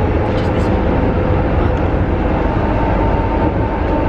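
Inside a moving passenger train carriage: a steady low rumble of the running train, with a faint steady whine coming in past the middle.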